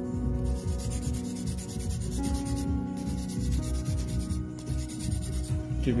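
Hand nail file rubbing back and forth in quick repeated strokes across the tip of an acrylic nail as it is shaped square, with two brief pauses.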